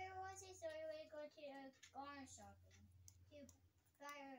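A young girl's voice, faint, singing in short held notes, with a low steady hum underneath.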